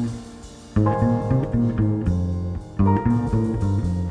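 Live jazz from a piano, trumpet, double bass and drums quartet, the double bass prominent with low plucked notes. Full chords come in about a second in and again near three seconds.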